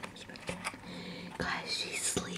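Soft whispering, with a few small clicks and taps of handling close to the microphone.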